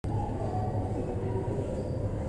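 Steady low rumble on an underground subway platform, with no train standing at the platform.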